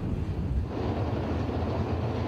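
Low, steady rumble of 410 sprint car V8 engines running around the dirt track, mixed with wind noise on the microphone.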